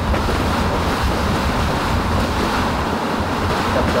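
Tropical-storm wind blowing hard and steadily, a loud rushing with a deep rumble where it buffets the car and the microphone, heard from inside the car.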